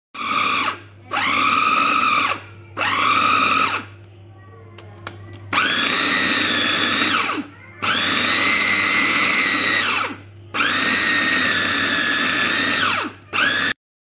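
Electric food chopper pulsed in seven bursts, each a high whine that spins up and winds down, grinding peeled raw shrimp without water into a paste. There is a longer pause about four seconds in, and the last burst is very short.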